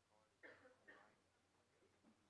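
Near silence: faint, distant voices murmuring in a quiet room, with two short, slightly louder syllables about half a second and a second in.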